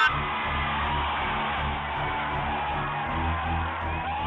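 A rally crowd cheering in an arena while loud music plays over it, recorded on a phone so the sound is dull and lacks treble.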